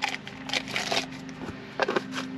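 Irregular rustling, crinkling and small clicks of things being handled, over a steady low hum.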